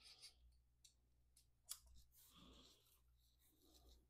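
Near silence: faint small clicks and rustling of hand-tool work as a hex screwdriver loosens the screws holding a 3D printer's print head, over a faint steady low hum. One sharper click comes a little under two seconds in.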